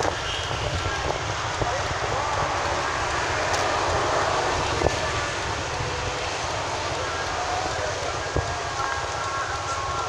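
Steady running noise of a moving vehicle: a low engine rumble under road and wind noise.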